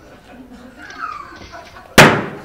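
A single sharp, loud slap of a hand coming down on a wooden office desk near the end, with a short ringing decay. A second or so earlier, a short whine falls in pitch.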